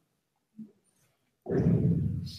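Near silence, then about one and a half seconds in, a man's low, rough vocal sound close to the microphone begins.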